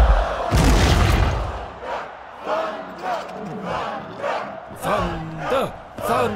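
Film sound effects: heavy booms and rumble in the first second and a half as a leap and impact land. Then an arena crowd chants and shouts in a steady rhythm, about two shouts a second.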